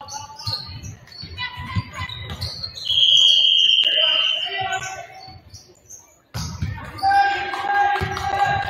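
Basketball game in a gym: a ball bouncing repeatedly on the hardwood floor, and a referee's whistle blown once for about a second, near the middle, over voices from the court and stands.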